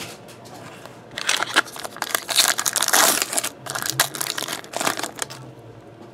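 Foil wrapper of a 2013 Tribute baseball card pack being torn open and crinkled in the hands: a run of crackling from about a second in until about five seconds in.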